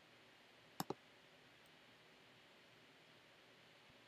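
Two quick computer mouse clicks close together about a second in, over faint steady hiss.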